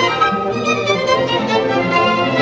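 A small orchestra playing live, led by bowed strings: violins, cellos and double basses sounding a moving melody over held lower notes.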